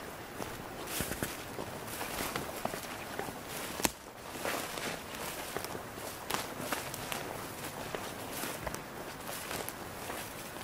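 Footsteps walking through forest undergrowth: irregular rustling and crunching of twigs and ground cover, with one sharp click about four seconds in.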